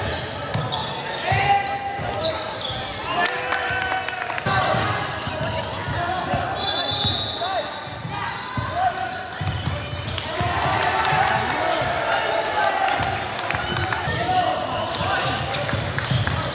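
Live basketball game sound: a ball bouncing on the court, with the overlapping voices of players and spectators calling out throughout.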